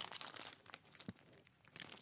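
Small clear plastic parts bag crinkling faintly as it is handled and opened, with a few soft ticks.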